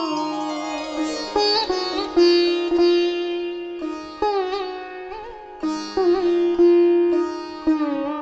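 Instrumental interlude of a devotional song: a plucked string instrument plays a melody of single notes over a steady drone. Each note is struck sharply and fades slowly, several of them bending up or down in pitch.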